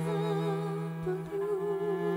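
Orchestral music: a held low chord sustained beneath a solo cello melody, played with a wide, slow vibrato.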